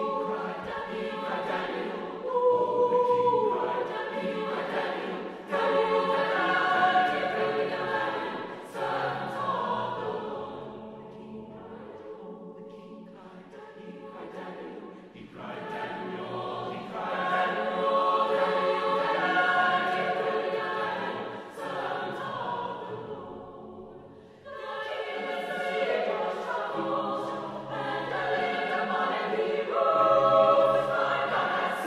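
Mixed choir singing a spiritual, many voices in harmony. About eleven seconds in it drops to a softer passage, swells back, dips briefly again a little past the middle, then comes back in strongly near the end.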